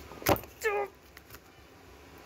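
A single sharp knock or slap, followed a moment later by a brief falling vocal cry.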